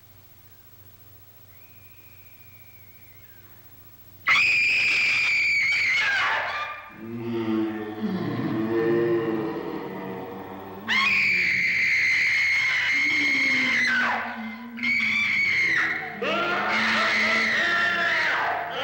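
After a faint, near-quiet few seconds, a woman's long, high-pitched screams begin about four seconds in, each held and then dropping in pitch. They alternate with lower, wavering ghostly moans, the screams returning twice and overlapping the moaning near the end. These are horror-film scream and moan effects.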